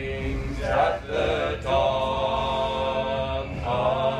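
A cappella choir singing in harmony, holding long sustained chords that change about a second in and again near the end, with a low rumble underneath in a commuter train carriage.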